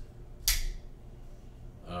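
Custom Knife Factory Gratch flipper folding knife flipped open, the blade snapping into lock with one sharp click about half a second in.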